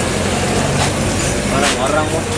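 A steady low mechanical hum, like an engine running, over outdoor street noise, with voices talking in the background near the end.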